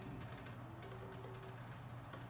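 Quiet room tone with a steady low hum and a faint held note in the middle.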